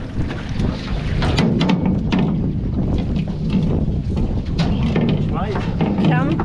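Small boat's outboard motor idling steadily under wind buffeting the microphone, with scattered knocks as a crab-pot float and rope are hauled in over the side of the aluminium hull. A man's voice starts near the end.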